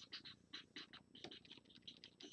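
Near silence with faint, irregular short scratches and taps, several a second: a plastic stylus stroking across the glass of a Wacom Cintiq pen display.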